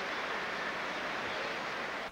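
Steady crowd noise from a large arena audience between boxing rounds, an even wash of many voices with no single voice standing out.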